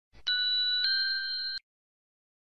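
Electronic chime sound effect: a bright, steady ding that sounds again slightly higher about a second in, then cuts off suddenly.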